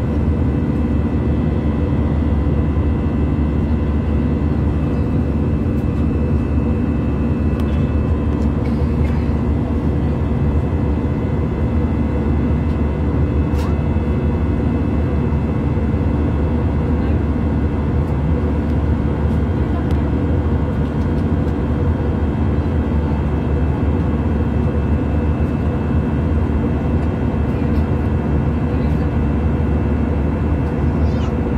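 Steady drone of an airliner's cabin in cruise: engine and airflow noise heard from inside, with a constant low rumble and a few steady hum tones over it.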